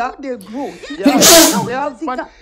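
A person speaking emphatically, with a loud breathy, hissing burst about a second in.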